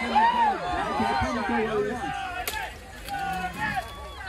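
Many spectators' voices calling out over one another, with a single sharp clash of steel about two and a half seconds in as the armoured fighters' greatswords strike.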